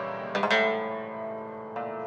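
Cimbalom chord struck with hammers about a third of a second in, ringing and slowly fading, then struck again near the end, as part of live Hungarian Gypsy band music.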